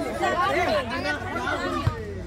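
Several people talking and calling out over one another, with a single thud of the football near the end.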